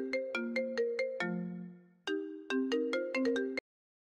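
Smartphone ringtone: a short tune of chiming notes that pauses briefly about two seconds in, starts over, and cuts off suddenly shortly before the end as the call is answered.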